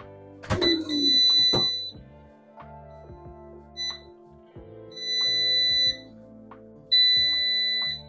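High electronic beeps from a kitchen gadget over soft background music: one lasting about a second near the start, a short one about halfway, then two longer ones near the end. A clunk comes just before the first beep as the air fryer basket is pulled open.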